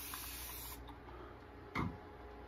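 A steady hiss that cuts off abruptly about three-quarters of a second in, followed by a brief faint sound near the end.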